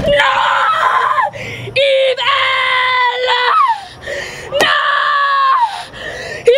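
A woman shrieking in three long, high-pitched screams. Each scream trails off with a falling pitch.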